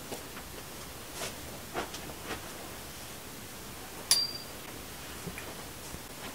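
Quiet room with a few faint knocks as bar tools are handled, then about four seconds in one sharp metallic clink with a brief high ring, from a metal cocktail jigger being picked up.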